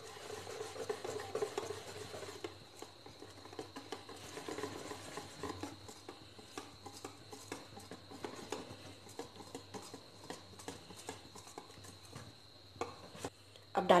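Wire whisk beating thick besan batter in a stainless steel bowl: soft, irregular swishing with light clicks of the wires against the metal.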